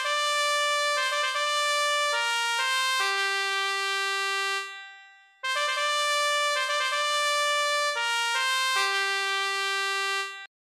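Synthesized trumpet sound from a smartphone piano app playing a melody: a short phrase of held notes stepping down to a long low note, which fades out about five seconds in, then the same phrase played again.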